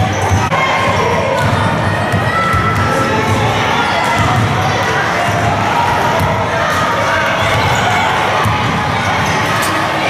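Several basketballs bouncing on a gym floor and hitting backboards and rims, amid the steady chatter and shouts of many children in a large sports hall.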